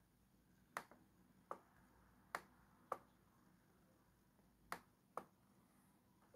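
Six sharp, separate clicks from clicking on a laptop to zoom an image, in an otherwise near-silent room. They come irregularly, roughly in pairs half a second apart, the last pair near the end.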